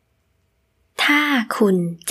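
Digital silence for about a second, then a woman speaking Thai in a clear, close voice.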